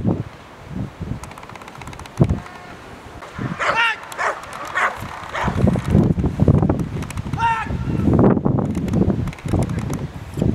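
A dog barks several times: one strong bark about four seconds in, a few shorter ones after it, and another strong bark about seven and a half seconds in. Wind rumbles on the microphone underneath.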